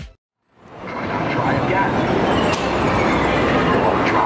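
Busy arcade noise fading in after a brief silence: a steady din of crowd chatter mixed with the rumble and tones of game machines.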